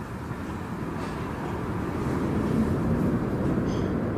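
Logo reveal sound effect: a deep, rumbling noise that swells steadily louder and eases off near the end.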